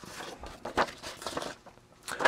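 Printed paper sheets being slid and handled on a wooden workbench: soft rustling with a few light taps in the middle.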